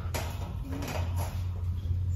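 Wire shopping cart rattling and creaking as it is moved, with a sharp knock just after the start as a ceramic figurine is set in the basket. A steady low hum runs underneath.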